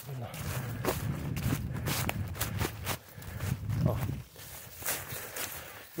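Footsteps of a person walking briskly through dry fallen leaves on a forest floor, each step a rustling crunch, about two a second.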